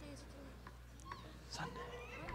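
Faint, indistinct murmur of congregation voices in a large hall, with a few small high vocal sounds like a young child's.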